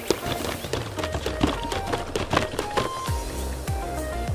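Background music over a series of gloved punches knocking against a freestanding punching bag, several irregular hits a second.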